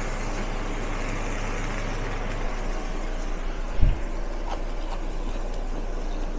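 Induction cooker running under a hot wok of stir-fried potatoes: a steady low hum with an even hiss, and one soft thump about four seconds in.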